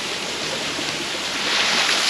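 Small waterfall spilling off a rock ledge into a shallow creek pool: a steady rush and splash of water that grows a little louder and brighter near the end.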